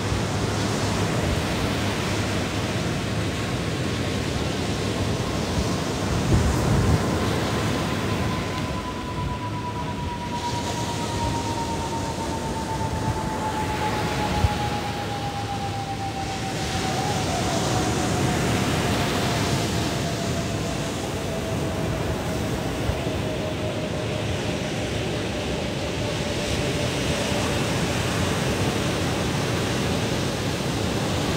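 Ocean surf breaking and washing up the beach, a steady rushing noise that swells and eases as each wave comes in. A faint steady tone slowly falls in pitch across most of the clip.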